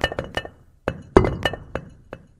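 Cartoon sound effect of stone letters clattering down into place on a stone slab: quick runs of sharp clacks with a slight ringing clink, a few at the start and a second cluster from about a second in.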